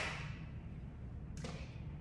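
A breath blown onto a rose's petals to open the bloom, its hiss fading out within the first half second, then a single light tap about a second and a half in.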